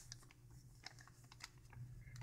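Faint, scattered light clicks and crinkles of a thin plastic gift bag handled in the hands.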